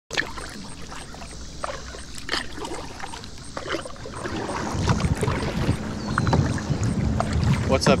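Water lapping and slapping against a plastic kayak hull, with irregular small splashes and drips, getting louder from about halfway through.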